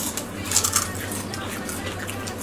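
Crunchy snack strips being bitten and chewed by several people, a brittle crackling crunch that is loudest about half a second in and then continues as lighter chewing.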